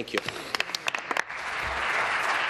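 Members of a legislative chamber applauding: a few scattered claps at first, swelling about a second in into dense, steady applause.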